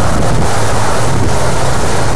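Wind buffeting the microphone: a loud, steady rushing noise with a low hum underneath.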